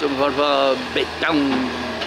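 Speech only: a person talking in Portuguese, over a steady low hum.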